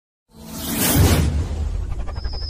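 Whoosh sound effect of an animated logo intro: a swell of rushing noise that builds, peaks about a second in and fades, over a deep low rumble.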